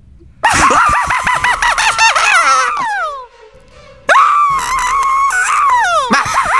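Two long, high-pitched screams, each about three seconds, shaky and wavering in pitch and falling away at the end.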